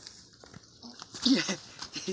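A person's short vocal exclamation about a second in, with a few faint knocks around it.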